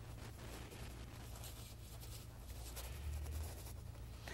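Faint scrubbing and brushing of a paintbrush working oil paint onto a canvas, over a low steady hum.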